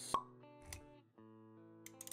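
Intro music of steady held notes with an animation sound effect: a sharp pop just after the start, the loudest thing, and a softer knock with a low thump about three-quarters of a second in.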